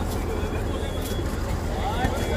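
Steady low rumble of a bus engine idling at the stop while people climb aboard, with indistinct voices around it.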